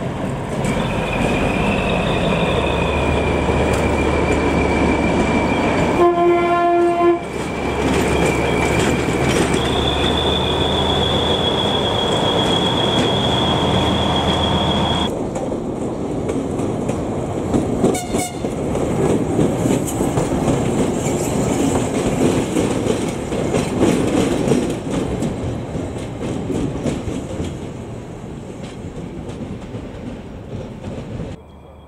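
A Hungarian M44 'Bobó' diesel shunting locomotive running with a steady low engine hum, a high steady squeal of wheels, and a horn blast of about a second some six seconds in. After a sudden change about halfway, the MÁV M61 'Nohab' diesel locomotive rumbles past with wheels clicking over rail joints and a short horn note.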